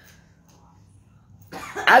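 A pause with faint room tone, then a man's short cough about a second and a half in, just before he starts speaking again.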